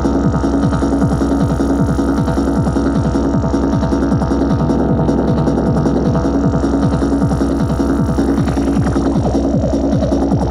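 Korg Electribe R mkII drum machine playing a tribal techno pattern: a fast, even run of synthesized percussion hits, each dropping in pitch, several a second, over a steady low drone. A higher tone slides in near the end.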